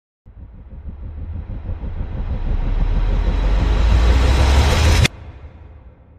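Intro sound effect: a rumbling whoosh that swells for about five seconds, then cuts off suddenly, leaving a fading echo.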